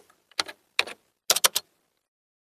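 Typing sound effect: short runs of rapid key clicks, three quick bursts with gaps of silence between them.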